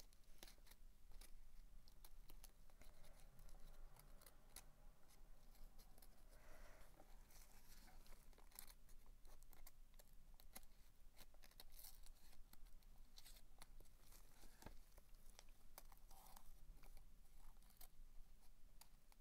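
Faint, scattered crinkling and scratching as a painted paper doily is pressed and smoothed into a resin mould with a wooden stir stick, with many small irregular clicks.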